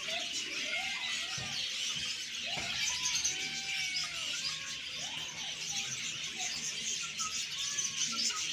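A dense, continuous chorus of many small caged birds chirping, with repeated short rising-and-falling meows from caged kittens over it.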